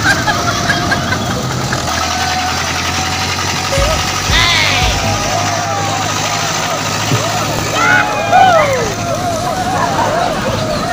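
A group of men shouting and calling out to each other as they push a road roller by hand, over the steady low drone of an engine running.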